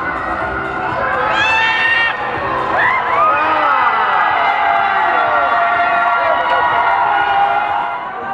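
A group of children shouting and cheering together, many high voices overlapping, swelling from about a second in and staying loud through the rest.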